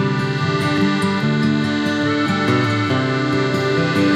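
Instrumental break in a folk song with no singing: accordion holding sustained chords over acoustic guitar and bass.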